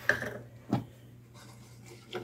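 Quiet kitchen handling sounds: a single light knock about three quarters of a second in, over a faint steady low hum.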